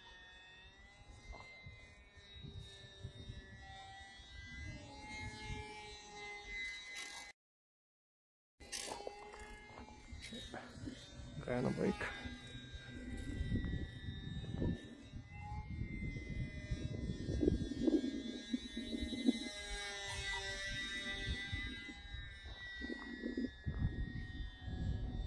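Electric motor and propeller of a small RC trainer plane in flight, a thin whine whose pitch wavers a little with the throttle, over wind rumble on the microphone that grows stronger in the second half. The sound cuts out completely for about a second near the seven-second mark.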